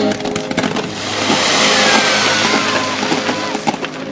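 Fireworks going off: scattered sharp cracks and a hissing rush that swells and fades over a couple of seconds, with a faint falling whistle in the middle.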